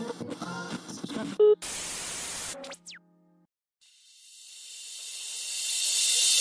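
Background music that breaks off about a second and a half in with a sharp click and a second-long burst of static-like hiss. A short falling tone and a brief silence follow, then a rising whoosh of high hiss swells steadily louder.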